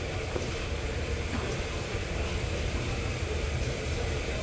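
Steady low rumble and hiss of gym background noise, machinery and air moving, with no single event standing out.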